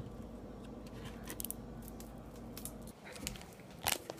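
Light clicks and taps of kitchen items being handled close to the microphone, over a steady low hum that drops away about three seconds in; a louder knock near the end.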